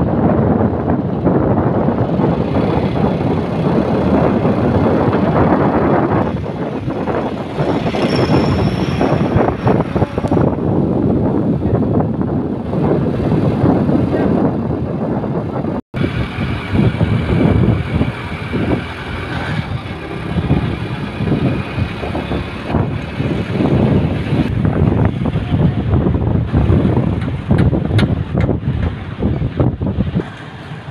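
Loud, rough, steady noise from a moving vehicle in traffic: wind buffeting the microphone over engine and road noise. The sound drops out for an instant about halfway through.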